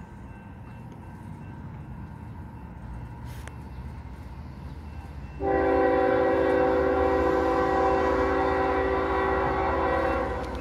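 Approaching diesel freight train: a low rumble builds gradually, then about halfway through the locomotive's air horn sounds one long, steady blast of several notes at once, much louder than the rumble.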